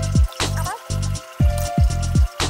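Background music with a beat: deep bass notes that slide down in pitch under steady held tones, with a sharp hit about half a second in.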